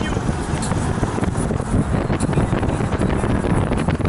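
Car driving through city traffic: a steady rumble of engine, tyre and wind noise.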